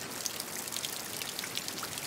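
Steady rain: an even hiss with a fine patter of many small drop ticks.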